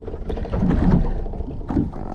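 Steady low wind noise on the microphone, with water moving against the hull of a small boat at sea.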